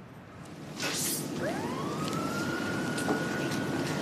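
A siren rising in pitch, then holding one steady note, over steady outdoor traffic noise, with a brief whoosh about a second in.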